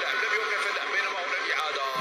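Thin, tinny speech from a broadcast playing in the background, most likely the football match's TV commentary; it has none of the low end of the nearby voice.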